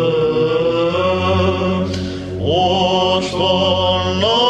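Byzantine chant: a male chanter sings the melismatic melody of a Lenten idiomelon over a steady held low note, the ison drone. Near the middle the melody breaks off briefly, then resumes on a rising note.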